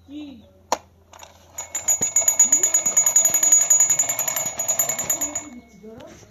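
Toy police motorcycle giving a loud, continuous high-pitched ringing rattle that starts about a second and a half in and lasts about four seconds, then stops.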